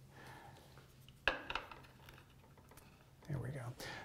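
A single sharp click of a small hard object being handled, about a second in, over a faint steady hum; a brief low murmur of voice comes near the end.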